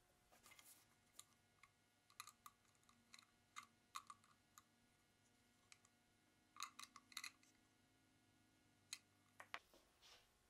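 Faint, irregular small clicks and light handling noise as clock hands are taken from a small plastic bag and pressed onto the clock movement's shaft, about twenty in all, with a cluster near the middle and a few near the end.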